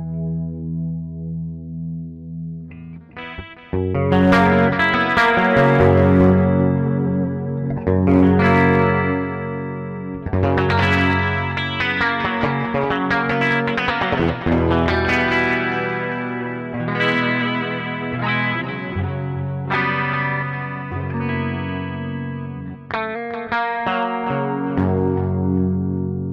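Headless electric guitar being played. A held chord fades away over the first few seconds, then playing picks up again about four seconds in with ringing chords and single-note lines.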